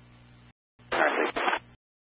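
Air traffic control radio audio: a faint hum and hiss of an open channel, then a short clipped burst of radio speech about a second in, followed by silence.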